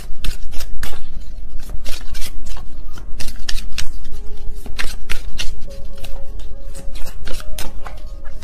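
A tarot deck being shuffled by hand: a rapid, irregular run of card clicks and flicks. Soft background music with held notes sits underneath from about halfway through.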